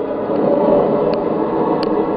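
A steady rushing drone of soundtrack sound design, swelling a little mid-way, heard through a television's speaker as picked up by a camera microphone.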